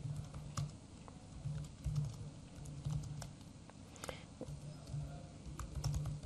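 Laptop keyboard typing: faint, irregular key clicks, a few seconds apart at times, over a steady low hum.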